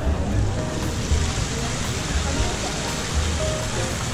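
Steady rush of water splashing from an outdoor fountain, growing louder about a second in, over background music with a heavy bass beat and faint crowd voices.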